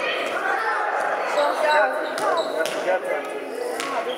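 Indoor football being kicked and bouncing on a sports-hall floor, heard as a few sharp thuds, the last and loudest near the end. The thuds echo in the large hall, over shouting voices.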